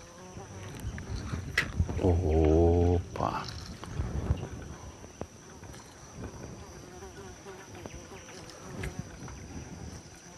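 A steady high-pitched drone, insect-like, runs throughout. About two seconds in, a man's low, drawn-out voice sound lasts about a second.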